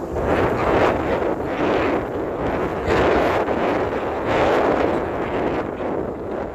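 Gusty wind buffeting a phone's microphone, rising and falling in loud rough swells, over footsteps crunching on a gravel path.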